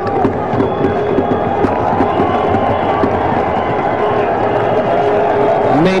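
Stadium crowd cheering, a steady din of many voices without a break.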